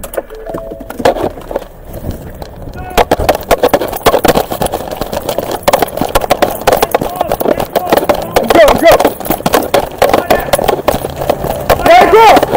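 Police body camera jostled on a running officer: a dense, irregular clatter of footsteps and gear knocking at the microphone, louder from about three seconds in, with brief shouted voices breaking in about two-thirds through and near the end.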